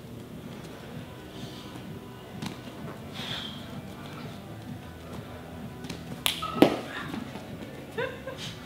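Background music, with two sharp impacts in quick succession about six and a half seconds in: a kick snapping a small roll of tape off a head.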